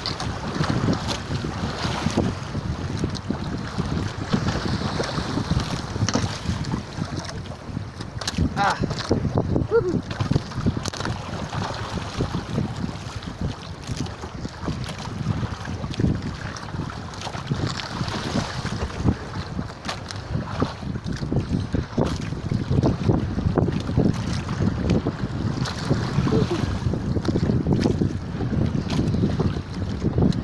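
Wind buffeting the microphone as a rough, fluctuating rumble on an open fishing boat, with scattered knocks, rubbing and clicks from hands hauling a handline and handling a freshly caught cutlassfish.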